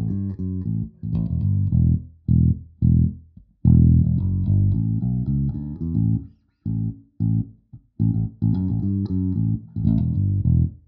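Electric bass riff played through a Darkglass Microtubes 900 head and Darkglass bass cabinets, heard close-miked: short detached notes with brief gaps. A fuller, louder run of sustained notes starts a little over three seconds in, as the same riff moves to another cabinet.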